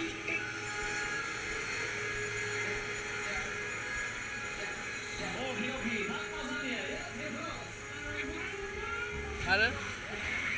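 Fairground music from the ride's loudspeakers with voices mixed in. A few short rising sounds come near the end.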